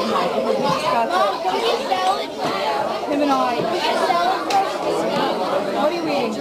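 Many people talking at once: the overlapping chatter of a busy restaurant dining room, with no single voice standing out.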